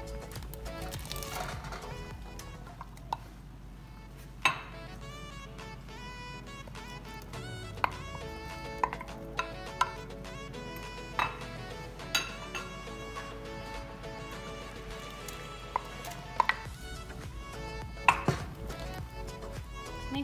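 Background music with held notes, over a dozen or so sharp, scattered knocks of a wooden spoon against a stainless steel pot and a glass bowl while a thick coconut-milk mixture is stirred.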